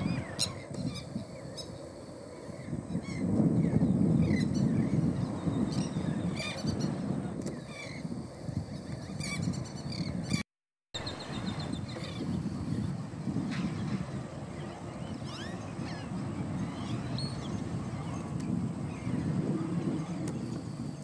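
Several small songbirds chirping and calling in short, scattered notes over a low wind rumble on the microphone. The sound drops out briefly about halfway through.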